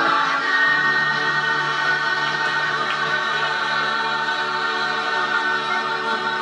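A women's choir singing in harmony, holding one long, steady chord.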